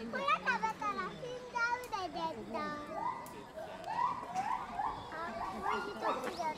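Children's voices chattering and calling out, several high voices overlapping at once.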